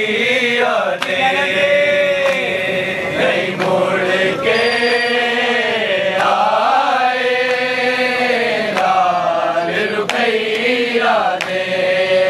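A group of men chanting a Punjabi noha (Shia lament) in unison, in long held phrases that rise and fall in pitch. A few sharp slaps cut through the singing.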